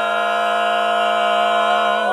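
A cappella barbershop quartet of four male voices holding one long, steady chord in close harmony.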